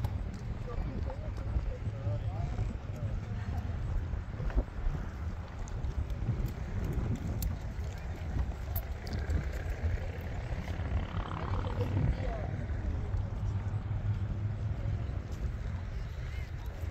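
Steady low rumble of wind on the microphone, with faint voices of people nearby on the boardwalk.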